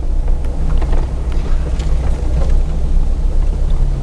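A motor vehicle's engine and road noise: a steady low rumble with a constant hum.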